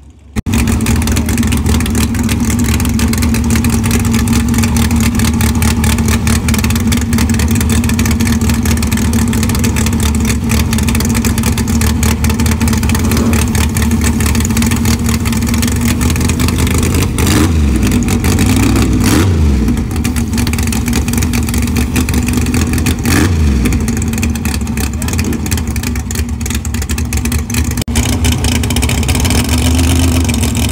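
A Fox-body Mustang drag car's engine idling loud and steady. The throttle is blipped a few times, with brief rises and falls in pitch about 17 to 19 seconds in and again around 23 seconds in.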